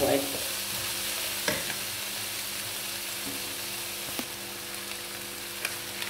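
Chopped vegetables and chicken frying with a steady sizzle in a non-stick wok, with a few soft knocks as a wooden spatula stirs them.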